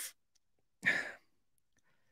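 A man's single short breath, about a second in, with near silence around it.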